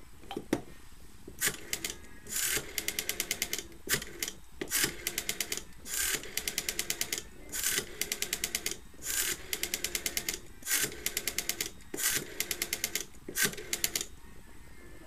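Western Electric No. 4 rotary dial on a 202 desk telephone dialing a number. There is a single click about half a second in as the handset comes off the cradle, then about seven digits: each time the dial is pulled round with a brief swish and spins back, sending a train of even clicks at about ten a second.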